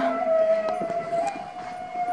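A steady, high sustained tone held on one pitch with a faint overtone above it, wavering slightly about a second in.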